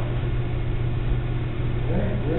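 Steady low hum with an even background hiss, holding level without any distinct events.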